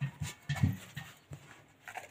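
Soft, irregular thumps and rustling close to the microphone as a dove chick is handled and put back into its nest.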